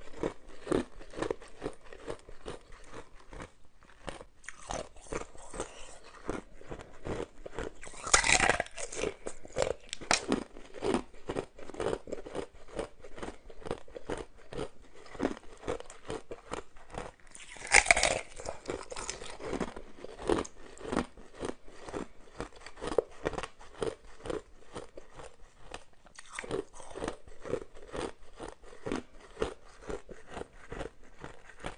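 Hard ice being bitten and chewed, a rapid run of crunches throughout. Two much louder bites stand out, one about a quarter of the way in and another just past the middle. The ice is moulded ice shapes.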